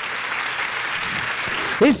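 A large congregation applauding: steady clapping of many hands, with a man's voice over a microphone coming back in near the end.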